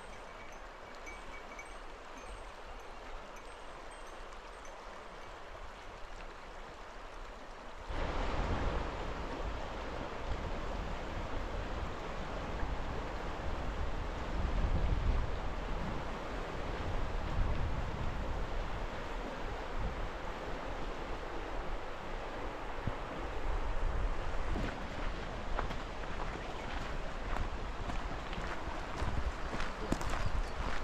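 Shallow, fast mountain river (the Azusa) rushing over gravel and stones in a steady wash. About 8 s in the sound jumps louder, with wind buffeting the microphone. Near the end, footsteps crunch on a gravel path.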